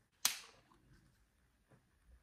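Twist-off cap on a glass bottle of iced tea coming loose as its seal breaks: one sharp pop with a short hiss about a quarter second in, followed by a few faint clicks.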